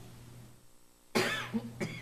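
A person coughing twice in a quiet meeting chamber: a loud cough about a second in and a shorter one near the end.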